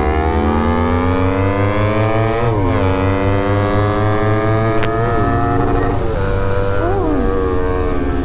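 Motorcycle engines running on the move, one pulling up steadily in revs over the first couple of seconds, then with a few quick rises and falls in revs, over a steady low engine throb.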